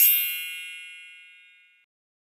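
A single bright chime sound effect rings out and fades away over about a second and a half. Its highest sparkle dies first.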